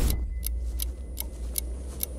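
Movie trailer soundtrack: a steady low bass drone under regular sharp ticks, about two and a half a second, building tension.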